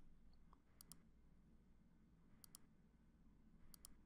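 Near silence broken by three faint pairs of computer mouse clicks, about a second in, halfway through and near the end, as menu items and a file are chosen.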